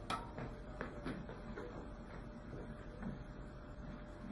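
Wooden rollerboard platforms knocking and rolling on the floor as they are pushed about under a person's feet: a sharp click at the start, then a string of lighter knocks and low thuds.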